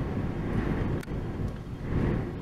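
Steady low rumbling background noise, with one faint click about halfway through.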